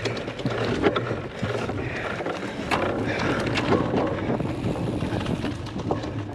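Wind rushing over a bike-mounted action camera's microphone as a cyclocross bike runs at speed on a muddy grass track: knobby tyres on dirt, with the bike knocking and rattling over bumps several times.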